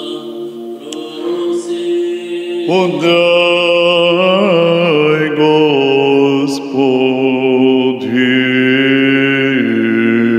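Orthodox vespers chant sung by a man's solo voice: long held notes with melodic turns between them, softer at first and louder from about three seconds in.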